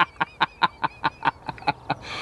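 A man laughing in a quick run of short, staccato bursts, about five a second.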